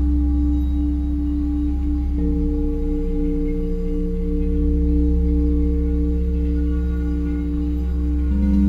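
Several large metal singing bowls ringing together in long sustained tones over a deep steady drone, one tone pulsing slowly as it wavers. About two seconds in, a higher bowl joins with a new sustained tone.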